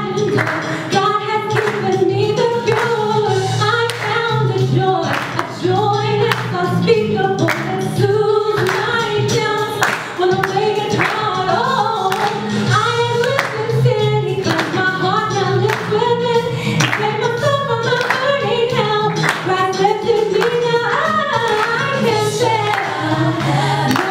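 A woman singing a gospel song into a microphone over accompanying music with a steady bass line and a regular beat.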